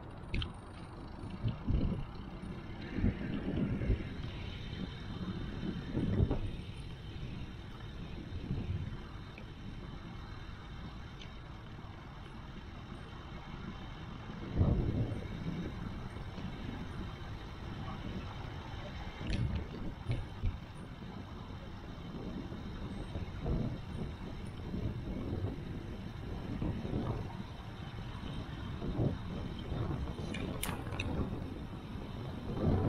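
Riding noise from a bicycle-mounted action camera: tyre rumble on asphalt and wind on the microphone, with irregular low surges and bumps.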